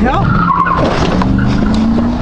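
Road traffic: a vehicle engine running with a steady hum that climbs in pitch about halfway through, over a constant road rumble.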